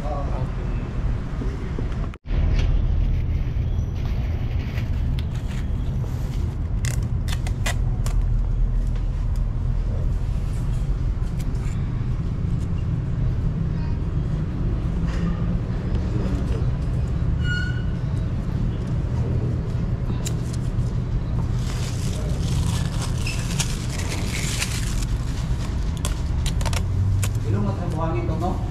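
Steady low rumble of background noise with muffled voices, broken by scattered small clicks and rustles of hands working on the scooter, with a stretch of scratchy rubbing about three-quarters of the way through.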